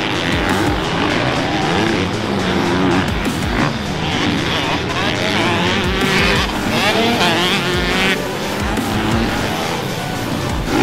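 Dirt bike engines revving up and down, with quick rising and falling pitch, more than one bike heard at once.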